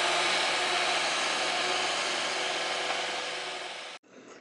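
Cat compact track loader's diesel engine running steadily as the machine drives away over a dirt pad, fading over the last second.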